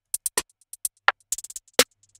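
Programmed electronic snare hits from a beat's percussion loop: short, sharp strikes in a sparse, uneven pattern, about a dozen in two seconds, with faint ticks between them.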